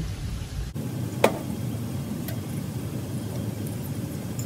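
Parts-washer solvent stream running into a carburetor float bowl, a steady splashing hiss, with one sharp metallic clink about a second in.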